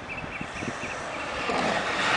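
Vectrix electric scooter approaching and passing close: a rising rush of tyres and air with a faint high whine, getting louder toward the end. A small chirp repeats about five times a second during the first second.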